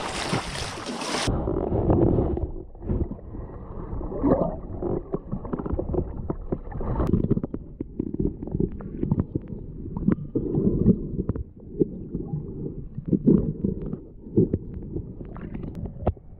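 Shallow sea water washing over shingle, cut off about a second in as the camera goes under water; from then on everything is muffled, a low underwater rumble of moving water with irregular knocks and bumps from the swimmer's movements.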